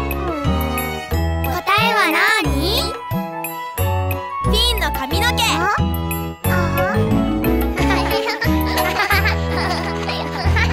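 Upbeat children's song backing music with a steady bass beat and jingly chimes, with cartoon children's voices exclaiming and chattering over it.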